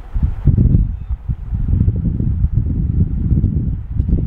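Loud, uneven low rumbling noise on the microphone, like air buffeting it, with no speech.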